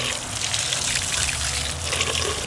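Water from a garden hose spraying steadily onto a steel brake drum, splashing off the metal as it rinses away the grinding residue from de-rusting.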